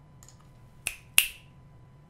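Two sharp clicks about a third of a second apart, the second louder, each ringing briefly, after a few faint ticks.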